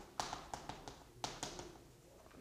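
Chalk tapping and clicking against a chalkboard while writing: a quick string of sharp taps, the strongest about a fifth of a second in and just after one second.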